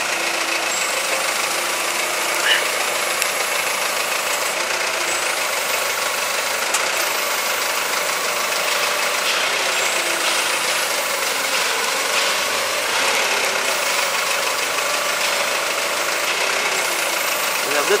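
Forklift engine running steadily while its mast lifts a pallet.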